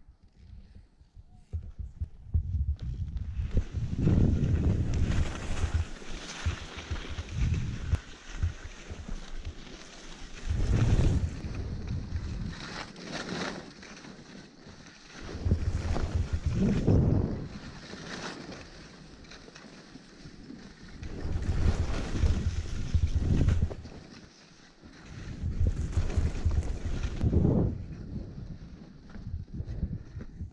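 Skis hissing and scraping over chopped-up snow through a run of turns, with wind rumbling on the camera's microphone; the noise swells and eases off every few seconds.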